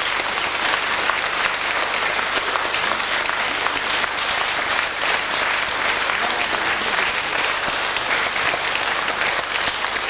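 Concert audience applauding steadily: a dense, even patter of many hands clapping.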